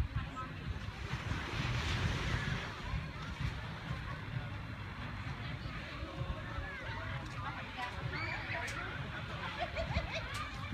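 Wind buffeting the microphone with a steady low rumble, over faint, distant voices chattering that grow a little clearer near the end.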